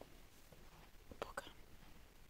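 Near silence: room tone with a few faint clicks a little over a second in.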